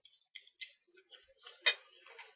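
Close-miked chewing of food, with small irregular crisp, wet crackles and one sharper, louder click about three quarters of the way through.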